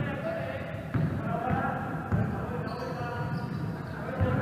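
A basketball being dribbled on a wooden gym floor, a low thud roughly every second.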